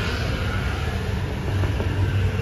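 Steady low rumble of street traffic passing by.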